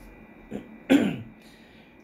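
A man clearing his throat once, a short, loud sound just before a second in, with a fainter one shortly before it.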